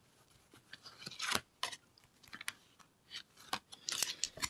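Tarot cards shuffled by hand: faint, intermittent rustles and clicks of card stock sliding against card stock.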